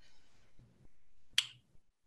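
A single short, sharp click about one and a half seconds into a quiet pause between words.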